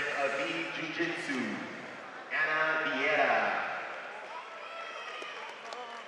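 Speech: a voice talking for the first few seconds, then only the big hall's quieter background noise.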